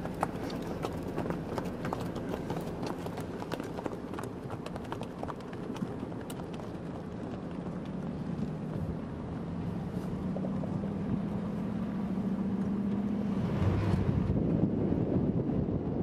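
Wild horses' hooves clip-clopping on asphalt, many sharp irregular clicks through the first half. They give way to a steady low vehicle engine hum that rises slightly, with a louder rushing noise near the end.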